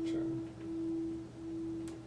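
Acoustic guitar holding a single sustained note near the pitch of the high E string, almost a pure tone at a steady pitch, as the guitar is being tuned. A small click near the end.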